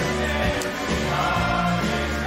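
A live band playing, with a group of voices singing together over a steady bass line.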